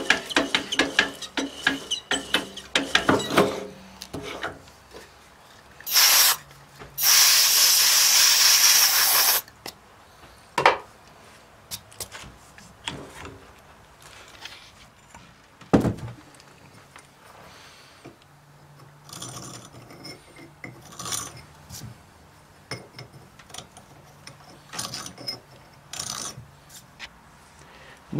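Metal clicks, knocks and scrapes from hands working around a cast iron engine cylinder clamped in a milling-machine vise. A loud steady hiss lasts about two seconds a quarter of the way in.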